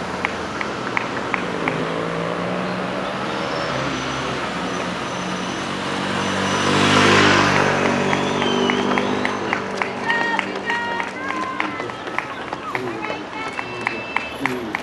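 A car passes close by on the road, its engine and tyre noise swelling to the loudest point about halfway through and then fading. Runners' footfalls tap on the pavement in a quick, even rhythm, and voices come in near the end.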